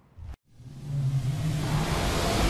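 TV show logo sting: a whoosh that swells up and holds over a deep rumbling tone, starting just under half a second in after a moment of dead silence.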